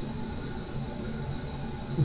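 Steady background hiss of room tone, even throughout, with no distinct sounds in it.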